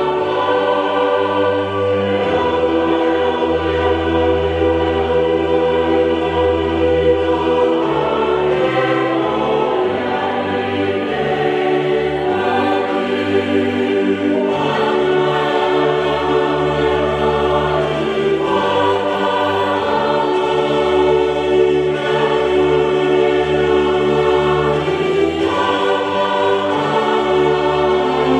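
A choir sings a slow hymn in long held chords, the harmony shifting every few seconds.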